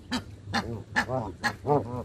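Geese calling in a quick series of short calls, about five in two seconds.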